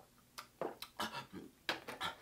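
A quiet run of short sounds as a person catches his breath after gulping from a large plastic jug, with small clicks from the jug being handled.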